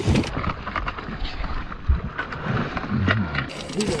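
A large bass being netted at the side of a fishing boat: water splashing and a jumble of irregular knocks and rustles as the fish thrashes and the net is hauled aboard.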